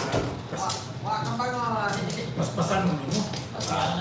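Mahjong tiles clicking and clacking against one another and the table as players draw, place and push tiles along the wall: many short sharp clicks, with people talking over them.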